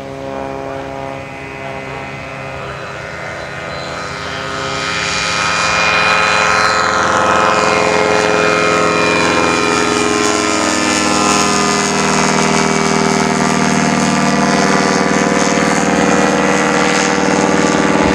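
Aerolite 103 ultralight's two-stroke engine and propeller droning as it flies past. The sound grows louder about four seconds in and then holds steady, with its pitch falling as it goes by.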